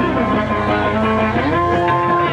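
Guitar music: held, ringing guitar notes with a sliding pitch change near the start and again about one and a half seconds in.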